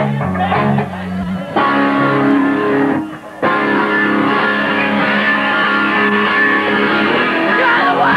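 Punk rock band playing live, recorded on a camcorder: electric guitar and bass open a song, and the full band comes in louder about a second and a half in. There is a brief break just past the middle, then the playing carries on.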